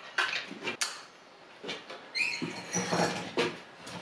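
Tombac (low-zinc brass) wire being hand-drawn through a steel draw plate held in a vise: short scraping, rasping strokes as the wire is gripped and pulled, with a brief squeal about two seconds in.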